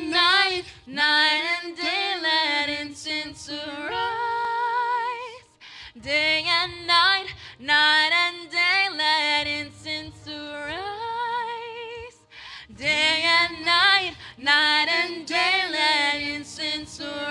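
A woman singing a worship song into a microphone, her voice wavering with vibrato, in three long phrases separated by short pauses.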